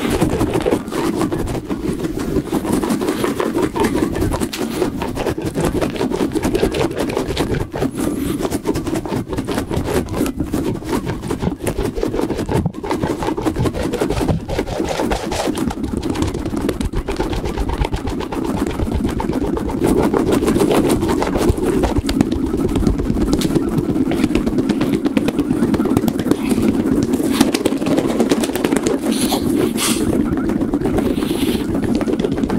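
A squishy ball covered in soft rubbery strands rubbed and squeezed rapidly right against the microphone: a dense, continuous scratchy crackle of many tiny clicks.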